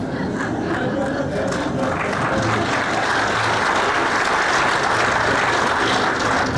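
An audience applauding, the clapping swelling about two seconds in and holding steady.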